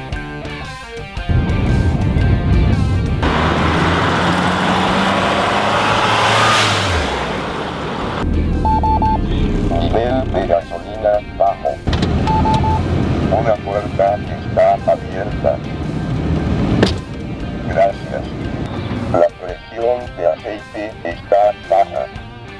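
A loud low rumble and rush for the first several seconds. Then a 1989 Chrysler Phantom's Electronic Voice Alert module chimes and speaks its warning messages in a synthesized voice, the chime coming again a few seconds later, over background guitar music.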